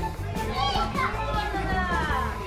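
Young children's high voices calling out and squealing as they run about playing, with high gliding cries in the second half. Background music with a steady bass line runs underneath.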